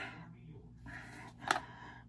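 Faint handling of a miniature doll-house sink cabinet and an action figure, with a single light click about one and a half seconds in.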